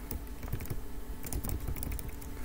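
Computer keyboard clicking: irregular, quick keystrokes.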